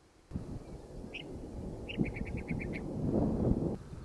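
A low rumbling noise begins suddenly just after the start. A small bird calls over it: one short note about a second in, then a quick run of about seven high notes.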